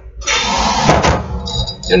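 A metal wheel hub handled and set down on a workbench: a run of scraping and rustling with a couple of sharp knocks about a second in.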